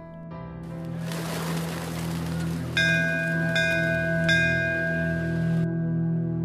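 Background music: a steady low drone with a swelling wash of noise, then three bell-like chimes a little under a second apart that ring on.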